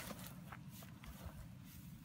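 Faint footsteps and the rustle and crackle of dry grass as a deer carcass is dragged through it.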